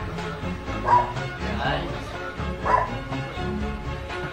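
A dog barking twice, about a second in and again near three seconds, over music and a voice in the background.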